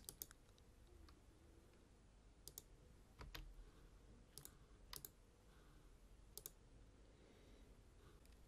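Near silence with a handful of faint, scattered clicks of a computer mouse.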